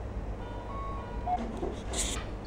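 A short electronic tune of a few thin notes stepping down in pitch, followed by a sharp knock near the end.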